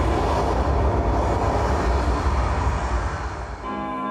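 A loud, rumbling whoosh sound effect from the performance soundtrack over the hall's speakers, heavy in the bass. It stops shortly before the end, where a held chord of music begins.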